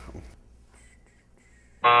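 A game-show style wrong-answer buzzer sounds once near the end: a loud, low, steady buzz about half a second long that starts and stops abruptly, marking the candidate's move as a wrong way to answer.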